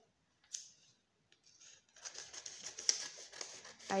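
Lined notebook paper being handled and cut with scissors: a brief rustle about half a second in, then from about halfway a busy run of crisp paper rustling and scissor snips.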